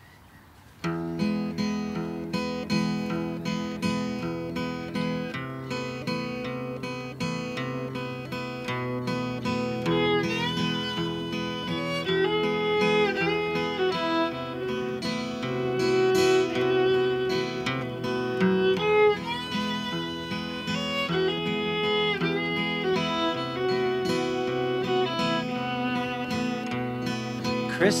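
Acoustic folk instrumental intro: a steadily strummed acoustic guitar starts about a second in, with a bowed violin playing a sliding melody over it.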